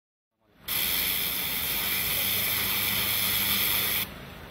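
High-pressure cleaner's water jet spraying a concrete wall: a loud, steady hiss that starts suddenly under a second in, with a faint low hum beneath, and cuts off abruptly.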